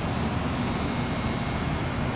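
Steady low rumble of background noise with a faint high-pitched hum running through it; no separate events stand out.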